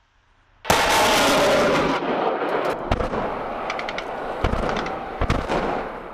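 TOS-1 thermobaric multiple rocket launcher firing a salvo: a sudden loud rushing roar that begins just under a second in, followed by continuing rumble with several sharp bangs, fading out near the end.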